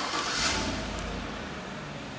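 A 2014 Chevrolet Silverado's 5.3-litre V8 starting by remote start: it catches, flares up about half a second in with a low rumble, then settles toward a steady idle.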